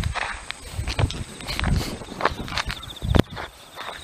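Sneakers stepping, pivoting and scuffing on asphalt in quick, irregular footfalls during the footwork of a Baguazhang form, with one heavier footfall about three seconds in.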